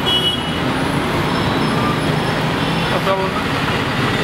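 Steady road traffic noise from a busy street, with a brief high horn toot just after the start.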